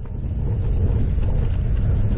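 Wind buffeting the microphone of a bike-mounted camera while riding along a paved highway, a steady low rumble.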